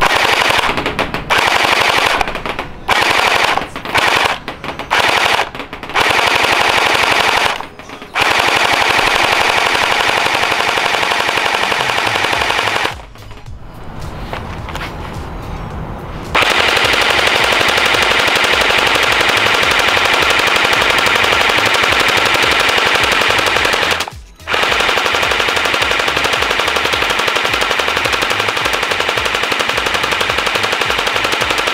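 JinMing M4A1 Gen 8 electric gel blaster firing on full auto, its motor and gearbox cycling at about 680 rounds a minute off a 7.4 V battery. Short bursts with gaps come first, then long unbroken strings of fire while a magazine is emptied, with a quieter stretch near the middle and one brief stop about three-quarters of the way through.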